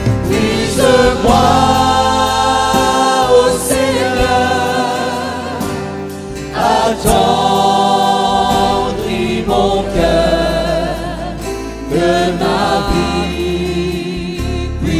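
Live worship team singing a slow gospel worship song in several voices, in phrases of long held notes with vibrato, backed by a band with a steady bass line.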